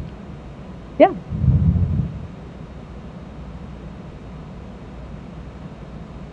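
Quiet room tone through the microphone. About a second in, a brief spoken "yeah" is followed by a short, low, muffled sound.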